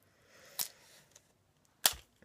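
Small objects being handled on a table: a faint rustle with a light tap about half a second in, then one sharp click near the end.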